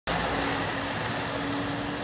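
Articulated lorry with a tipper trailer passing close by at low speed: its diesel engine runs steadily, with a held hum over a broad rushing noise.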